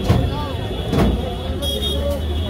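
Busy street-stall background: a steady low rumble with voices underneath, and two sharp clicks about a second apart.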